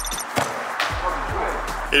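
Background music with a steady beat. About a third of a second in comes a single sharp thud of a football struck by a kick.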